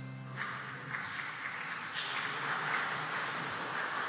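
The last held chord of the closing music dies away in the first second, giving way to a steady noisy hubbub of a congregation moving and talking in a large, reverberant church.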